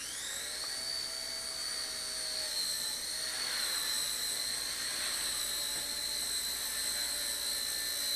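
Blade Nano CP S micro collective-pitch RC helicopter spooling up: a high electric whine rises quickly at the start as the rotor comes up to speed, then holds steady.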